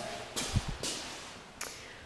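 Movement and handling noise from someone walking with a handheld camera: about four short knocks with a low thud about half a second in, echoing in an empty garage.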